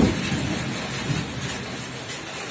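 Steady rain falling on a wet road and vehicle, heard outdoors as an even hiss.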